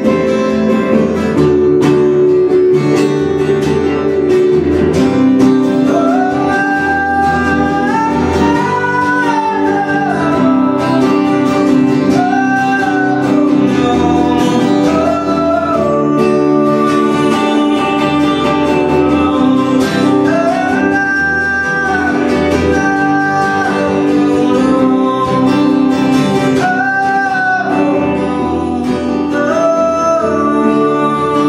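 Live guitar music: a strummed acoustic guitar with an electric guitar, and a gliding lead melody entering about six seconds in and repeating in phrases.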